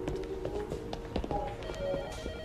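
Hospital ward background noise: an electronic telephone ringing in pulses near the end, with scattered clicks and clatter.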